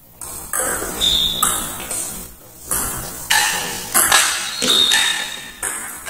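Table tennis rally: the celluloid ball clicking sharply back and forth off rubber paddles and the table top, about ten quick hits, several with a brief ringing after them.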